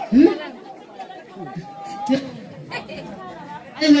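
People talking in a local language, with overlapping chatter: several voices, one rising sharply near the start.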